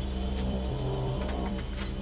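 A low, steady ambient drone with a couple of faint clicks.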